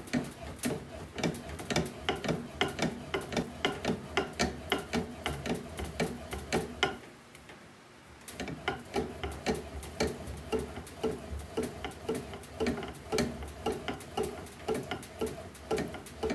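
A composite slowpitch softball bat (Miken DC41 Supermax) being rolled back and forth by hand between the rollers of a bat-rolling machine to break it in. Rapid, even clicking, about three clicks a second, stops for about a second and a half just past the middle, then resumes.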